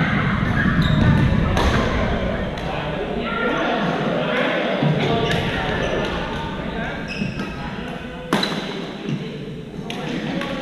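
Badminton rackets hitting shuttlecocks: sharp, scattered hits among players' voices, echoing in a large gym hall, with one louder hit about eight seconds in.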